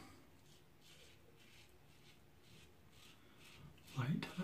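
Faint, short rasping strokes of a double-edge safety razor blade scraping through lathered stubble on the against-the-grain pass, about two to three strokes a second.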